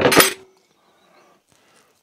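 Metal cooking utensils clattering briefly, a short bright clink-and-rattle in the first half-second, then near quiet.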